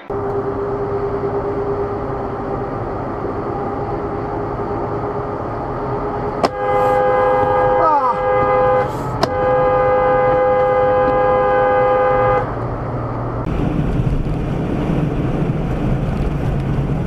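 Vehicle engine and road noise. About six seconds in, a vehicle horn starts and is held for about six seconds, with a brief break in the middle, then stops abruptly.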